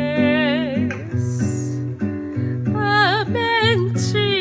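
A woman singing a slow song with vibrato over acoustic guitar accompaniment. The voice breaks off briefly about a second in and comes back in about two and a half seconds in, while the guitar keeps playing.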